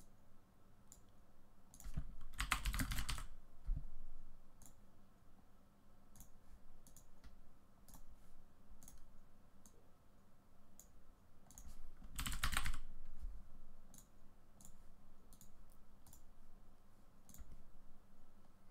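Computer mouse and keyboard clicks: scattered light clicks and keystrokes while selecting and linking text in an editor. Two louder, longer bursts of noise come about two seconds in and about twelve seconds in.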